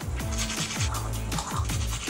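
Electronic background music with a steady bass line and repeated falling swoops.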